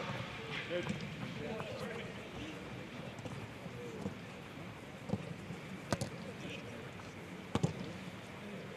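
Footballers' footsteps as a group runs a warm-up drill on grass, with the coach calling "Good" at the start and faint voices in the background. Two sharp knocks come near the end.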